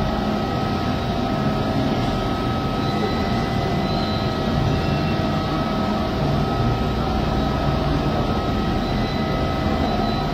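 Steady droning hum with a few constant whining tones running through it, unchanging in level.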